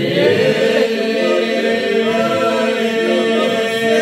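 A group of men singing an Albanian folk song unaccompanied, in several voices, over a steady held drone note.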